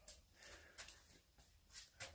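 Near silence: room tone, with a few faint, brief soft ticks.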